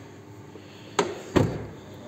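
Hyundai Solaris front driver's door being shut: a sharp knock about a second in, then a louder, deeper thud a third of a second later as the door closes.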